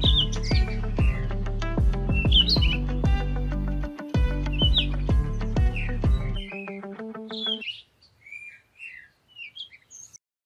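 Background music with a steady beat over bird chirps. The music's bass drops out about six and a half seconds in and the music ends soon after, leaving the chirps alone near the end.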